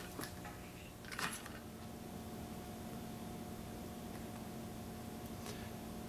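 Quiet room tone with a faint steady hum, and a brief soft rustle about a second in.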